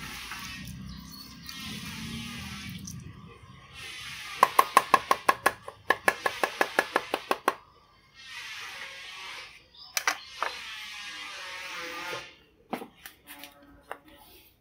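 A cleaver chopping rapidly on a chopping board, about six or seven strikes a second for some three seconds, mincing a tofu stuffing. Then scraping as the blade is drawn across the board, with a couple of sharp knocks.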